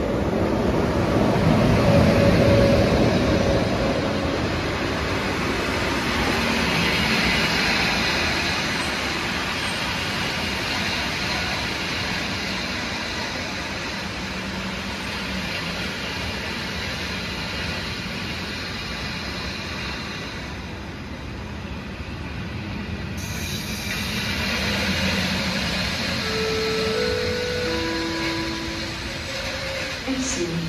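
SJ Rc electric locomotive hauling an InterCity train of passenger coaches past a station platform, steel wheels rolling on the rails. Loudest in the first few seconds as the locomotive goes by, then the steady running noise of the coaches rolling past.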